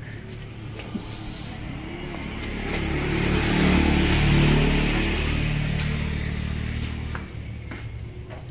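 A motor vehicle drives past on the road, its engine and tyre noise swelling to a peak about four seconds in and then fading away.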